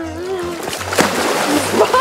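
A person plunging into a swimming pool: a sharp slap on the water about a second in, followed by a second of spraying, churning splash.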